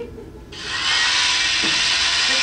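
Electric carving knife buzzing as it slices the meatloaf, starting suddenly about half a second in and running steadily, played from the film's soundtrack over cinema speakers.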